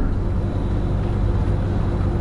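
Steady background room noise: a low hum under an even hiss, with no other sound standing out.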